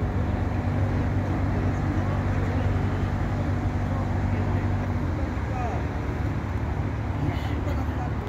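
Steady low hum of a running engine, with a change in its tone about five seconds in, and faint voices in the background.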